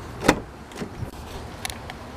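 Driver's door of a 2016 Dodge Journey being opened: the handle is pulled and the latch releases with one sharp click, followed by a few lighter clicks and knocks as the door swings open.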